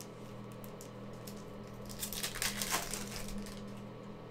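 Football trading cards and foil card packs being handled and flipped through by hand: soft rustling and light clicks, busiest from about two to three and a half seconds in.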